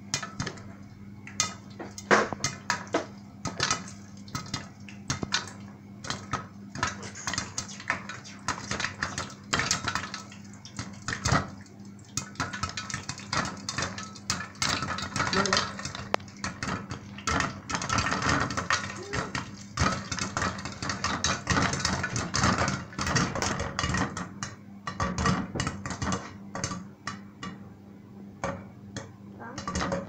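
Popcorn kernels popping in hot oil inside a covered stainless steel pot with a glass lid: a continuous, irregular run of sharp pops, densest in the middle, with kernels ticking against the lid.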